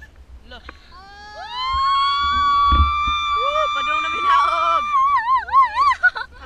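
Children's voices letting out a long, high-pitched shriek that rises into a held note, joined briefly by a lower voice, the note wavering up and down near the end. Wind rumbles on the microphone underneath, with one thump in the middle.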